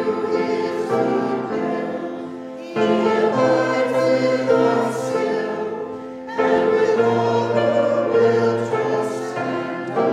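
A church congregation singing a hymn together in phrases, with new phrases starting about three seconds and six and a half seconds in.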